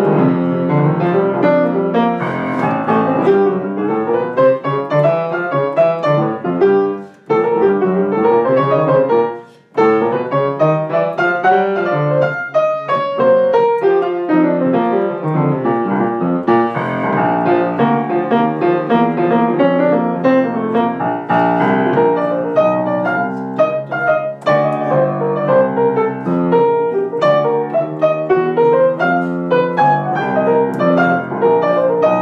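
Acoustic grand piano played solo: bebop jazz improvisation over rhythm changes, with quick runs sweeping up and down the keyboard over chords in the left hand. It stops briefly twice, about seven and ten seconds in.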